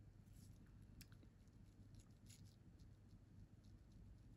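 Near silence: room tone with a few faint, short ticks and rustles of gloved hands handling a nail tip and top coat brush.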